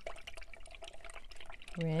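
Paintbrush being swished in a jar of rinse water: small irregular splashes and light ticks.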